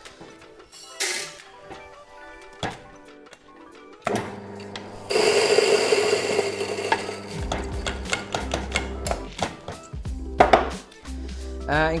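Large electric coffee grinder running for a few seconds, grinding beans to a medium-fine filter grind, followed by a run of quick taps and knocks as the grinder and cup are knocked to free the grounds. Background music plays under it.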